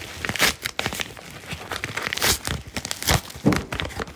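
A small brown mail package being torn open by hand: the packaging crinkles and rips in an irregular run of rustles and tears, with a few sharper rips along the way.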